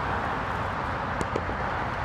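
Steady rumble of passing highway traffic, with a couple of faint clicks just past the middle.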